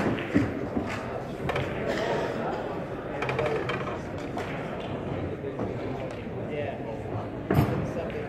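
A few sharp clacks of pool balls striking, the loudest near the end, over a steady murmur of voices in a large hall.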